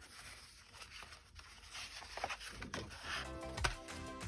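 Sheets of card stock rustling and sliding as they are handled and laid down. Background music comes in about three seconds in.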